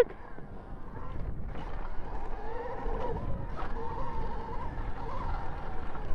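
Rawrr Mantis X electric dirt bike's motor whining under throttle while riding over grass, its pitch drifting up and down a little, over a steady low rumble.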